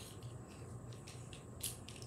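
Quiet room tone with a low steady hum, broken by a faint click or two of small objects being handled near the end.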